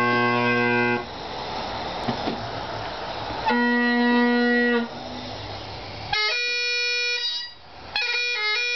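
Great Highland bagpipes being set going. The steady drone chord cuts off twice into a breathy rush of air while a drone is handled, then sounds again. Near the end the chanter comes in over the drones with a run of high notes.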